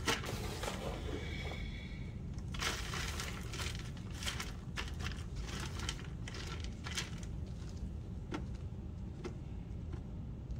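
Gloved fingers sifting and picking through dry, hard-clumped worm castings on a wire-mesh sifter screen: scattered light crackles and scrapes. A steady low hum runs underneath.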